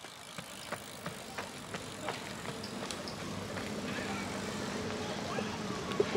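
A runner's quick footfalls on pavement, about three steps a second, over a steady rush of wind and rolling noise. The steps fade out about halfway through as the runner eases off.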